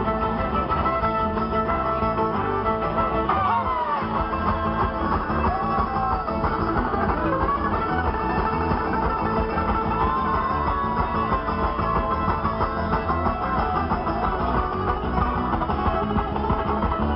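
A bluegrass string band playing live, an instrumental passage without singing: strummed acoustic guitar and other plucked strings keep a steady pulse. A melody line slides down in pitch about three to four seconds in.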